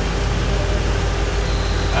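A steady low hum with a constant mid-pitched tone running through it, unchanging across the two seconds.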